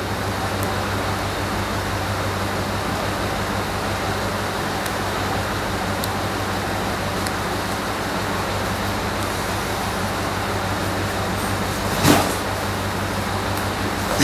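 Steady background noise with a low hum and hiss, broken by one short knock about twelve seconds in.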